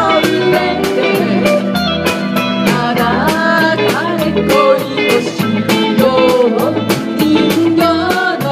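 A live band playing a pop song: singing over electric guitar, bass and drums with a steady beat.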